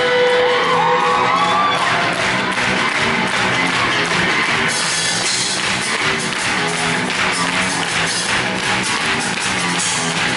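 Live rock band playing an instrumental stretch of a song, with drum kit, electric bass and guitar and no vocals. The drums settle into a steady driving beat about two seconds in.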